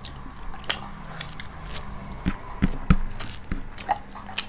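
Close-up mouth sounds of eating rice and chicken curry by hand: chewing and wet smacking, heard as a scatter of short sharp clicks.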